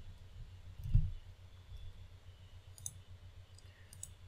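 A few faint clicks from a computer keyboard and mouse being worked, with a soft low thump about a second in, over quiet room noise.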